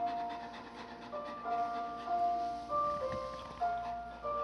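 Background music: a slow, gentle melody of single sustained, chime-like notes, each note starting softly and slowly fading.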